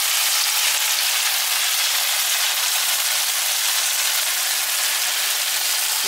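Spring rolls deep-frying in hot oil in a pan, a steady sizzle of oil bubbling around them.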